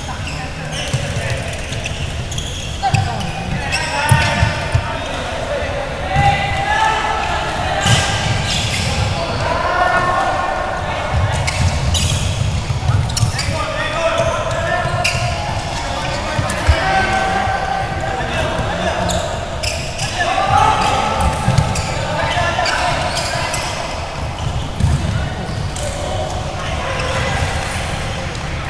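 Indoor floorball play: frequent sharp knocks and thuds of sticks, ball and feet on the court, with players' shouted calls throughout, echoing in a large sports hall.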